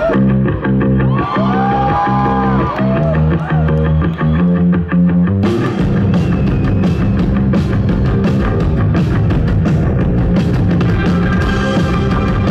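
Rock band playing live, electric guitars and bass opening with a riff that has some bent notes. Drums come in about five and a half seconds in with fast, steady cymbal strokes, and the full band plays on.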